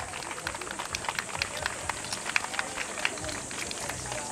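Scattered, irregular sharp claps and clacks, several each second, over a faint murmur of voices.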